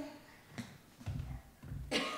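Three or four dull, low thuds: barefoot footsteps on a hardwood floor.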